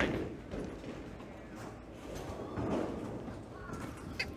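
Bowling alley background noise: a steady low rumble with a knock at the start and faint distant voices.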